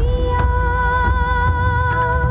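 Music from a live DJ set on turntables: a heavy bass line under a single note held for about two seconds.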